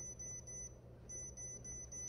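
Faint high-pitched electronic whine, on for about a second, a short break, then on again, over a low steady hum.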